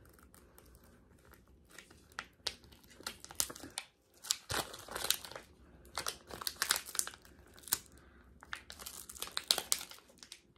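A foil-and-plastic toy surprise packet crinkling in irregular crackly bursts as hands strain to pull it open; it is too tough to tear.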